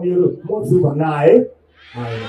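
A man speaking into a microphone, his voice rising in pitch at the end of a phrase, then breaking off in a short pause near the end.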